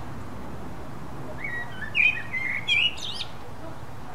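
Eurasian blackbird singing one phrase, starting about one and a half seconds in: a few warbled notes that end in a higher twitter.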